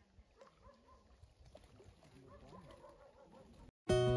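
Faint outdoor background with distant calls through most of it. Near the end it drops out to a moment of silence, and acoustic guitar music starts loudly.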